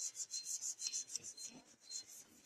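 Cloth duster wiping a chalkboard: quick back-and-forth strokes, about four a second, each a short rubbing hiss.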